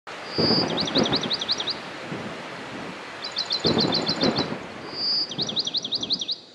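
A songbird singing three phrases, each a short held whistle or a rapid run of chirps, over a steady background noise with low rumbles.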